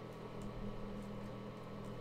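A steady low hum, with a few faint soft clicks as trading cards are slid through by hand.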